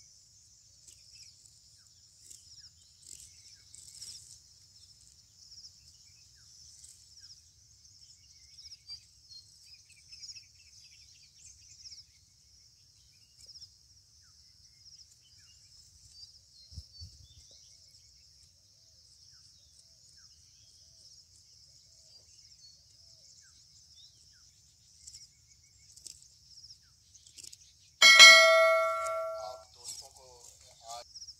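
Faint, steady high-pitched insect chorus. About two seconds before the end comes a loud, bright bell-like chime lasting about a second and a half, a subscribe-button sound effect.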